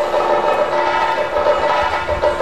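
Live Mohiniyattam accompaniment: a held, chord-like instrumental tone of several steady pitches, swelling in pulses about every two-thirds of a second, with low drum strokes near the end.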